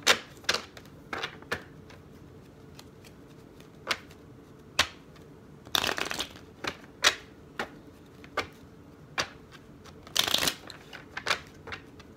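A miniature tarot deck being shuffled by hand: scattered soft card clicks and snaps, with two longer bursts of shuffling about six and ten seconds in.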